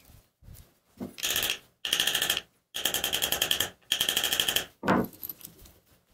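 Four bursts of rapid metallic clicking, each about a second long, as the screw of a steel C-clamp is spun down onto a wooden knife handle, followed near the end by a single knock.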